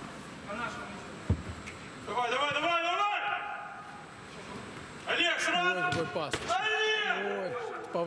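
A football kicked hard, one sharp thump about a second in, followed by men's voices shouting across the pitch.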